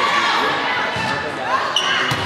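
Many spectators talking at once in a gymnasium during a volleyball match. Near the end comes a brief, shrill referee's whistle, the signal for the serve.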